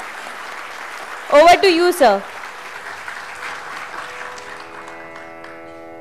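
Audience applauding, with a short loud spoken phrase over it about a second and a half in. The applause fades after about four seconds and a tanpura drone starts up, a steady chord of held tones.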